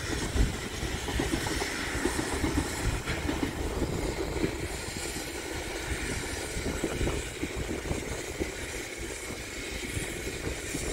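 Passenger train running past over the level crossing: a steady low rumble of wheels on the rails, with a rapid run of short knocks from the wheels over the track.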